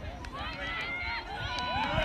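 High raised voices of players and spectators shouting and calling out during open rugby league play.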